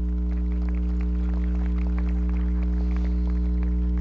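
Steady electrical mains hum, a low buzz with a stack of overtones, with faint scattered clicks over it.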